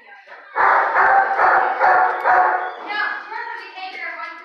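A dog barking about six times in quick succession, loud, then quieter sounds near the end.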